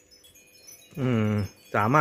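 A man's speaking voice: about a second's pause, then a drawn-out hesitation sound of about half a second, and speech starting again near the end.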